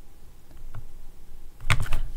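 A few sparse clicks of computer keyboard keys, a faint one before the middle and a louder quick cluster near the end.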